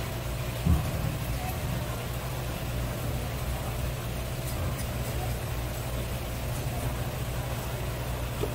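Steady low machine hum, with a single soft thump about a second in.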